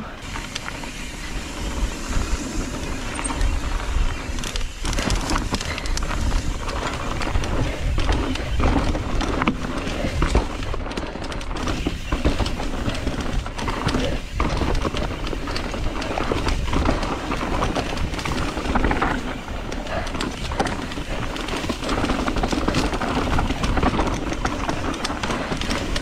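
Mountain bike riding fast down dirt singletrack, heard from a camera on the bike or rider. Tyres roll on dirt, the bike rattles and knocks over bumps, and wind rushes on the microphone, with background music mixed in.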